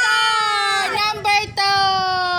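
A child's long, high-pitched excited squeal, held as two drawn-out notes with short yelps between them about a second in, each note sagging in pitch as it ends.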